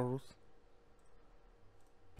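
A voice trails off at the start, then near silence with a couple of faint computer mouse clicks, about a second in and near the end.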